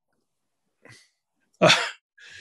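A pause in a man's speech, broken by a faint breath and then, near the end, one short throaty 'uh' that sounds close to a cough.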